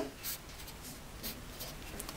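Pen writing on paper: a run of short, faint scratching strokes as small letters are written.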